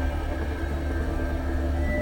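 Berlin School electronic music played on synthesizers: a deep sustained bass drone under layered held synth tones, with a higher tone coming in near the end.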